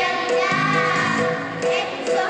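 A children's choir singing with instrumental backing, an accompaniment note recurring about twice a second under the voices.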